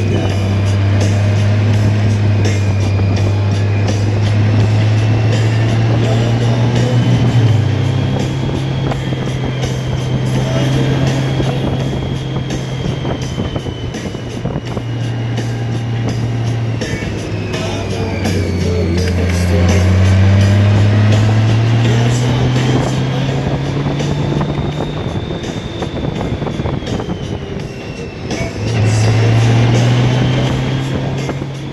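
Touring motorcycle engine pulling through winding uphill curves, its pitch climbing and falling with the throttle, with sudden steps about a quarter of the way in and again near the end, over wind noise on a collar-clipped phone.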